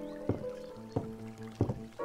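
Slow solo piano music, single notes struck about twice a second and left ringing.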